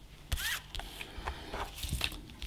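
Hands handling small objects on a tabletop: a brief rustle about half a second in, then a scatter of light clicks and taps as things are picked up and set down.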